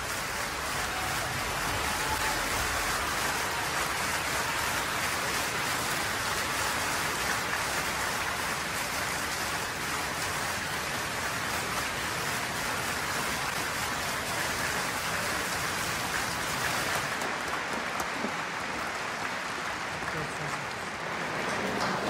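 Concert audience applauding, long and steady, thinning slightly near the end.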